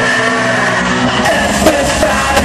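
Loud live hip-hop concert music from the venue's sound system, an instrumental stretch without vocals; a deep bass comes in louder about a second in.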